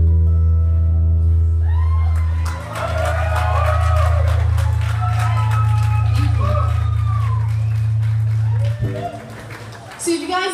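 Final acoustic guitar chord ringing out, low and sustained, while the audience cheers and claps from about two seconds in; the chord stops shortly before the end.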